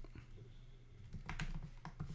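Computer keyboard typing: a short run of faint, quick keystrokes, most of them in the second half.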